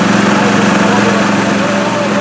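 Engine of a truck-mounted excavator running steadily at idle, a constant low drone.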